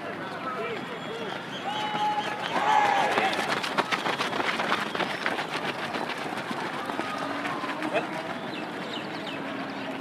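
A group of men running together on a dirt track: many footsteps, thickest in the middle, under men's voices calling and chattering.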